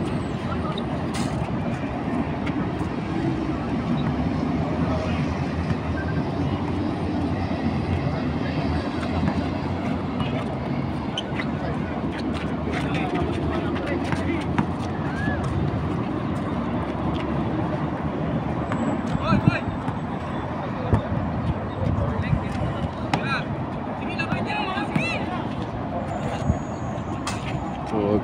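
Pickup basketball game on an outdoor concrete court: players' voices at a distance and a few sharp ball bounces, over a steady rumble of road traffic.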